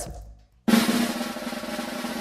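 A snare drum roll sound effect, the kind used to build suspense before a reveal. It starts suddenly after a brief silence about two-thirds of a second in and runs on steadily.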